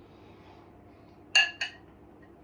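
A small drinking cup set down on a plate: two sharp clinks about a quarter-second apart, the first louder, both ringing briefly.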